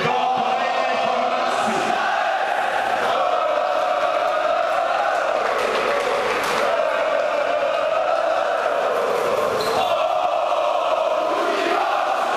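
Crowd of fans chanting together in a sports hall, a steady massed sound of many voices.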